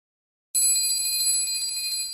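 A single bell-like chime struck about half a second in, ringing on with a bright, high tone and slowly fading.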